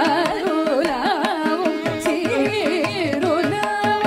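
Carnatic vocal music: a woman's voice sings a heavily ornamented melody that slides and oscillates in pitch. Violin, mridangam and ghatam accompany her, with frequent drum strokes over a steady tanpura drone.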